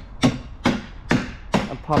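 Footsteps on a dirt path: four even steps, about two a second.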